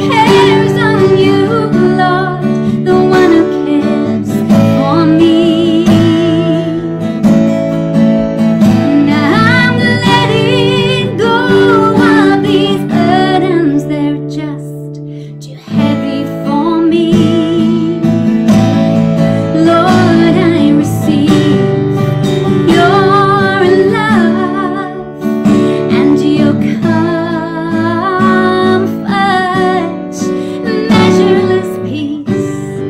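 A woman singing with vibrato to her own strummed acoustic guitar. About halfway through the music briefly dies down, then the strumming and singing come back in.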